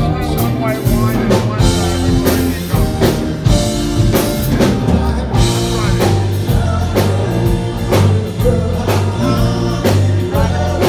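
Live rock band playing: drum kit, bass, electric guitars and organ and keyboards, recorded from the audience.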